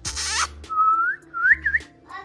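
A short harsh rasp, then three clear whistles that rise in pitch: one longer whistle followed by two quick short ones.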